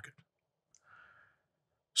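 A pause in a man's speech: near silence apart from a faint breath about a second in, with his voice cutting back in at the very end.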